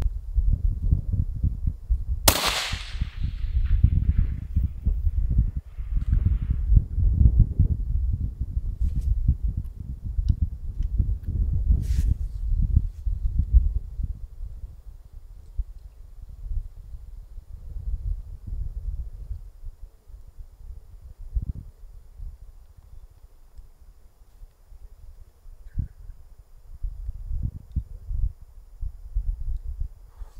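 A suppressed 6.5 Creedmoor bolt-action rifle fires one shot about two seconds in, and the report trails off in echo. A fainter sharp click comes about ten seconds later. A low, gusting rumble of wind on the microphone runs under the first half.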